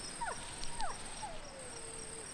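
Crickets chirping steadily in an even rhythm, with three faint falling cries from an animal: two short ones early on and a longer, slowly sinking one starting a little after a second in.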